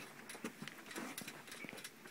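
Faint, irregular light clicks and taps, a few each second, over low room hiss.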